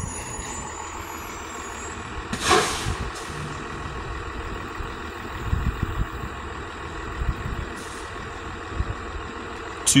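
2000 Thomas FS65 school bus with a 5.9 Cummins diesel approaching and slowing, its engine a steady low rumble. A short hiss of air comes about two and a half seconds in, from the air brakes.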